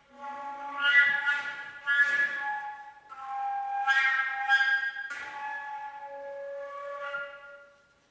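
A recorder playing a solo contemporary line in several short phrases of high, whistle-like notes with sharp attacks, ending on a held lower note that fades out just before the end.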